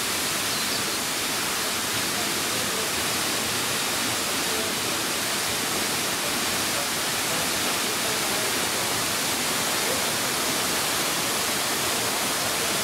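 Steady rushing hiss of a tall waterfall plunging into its pool.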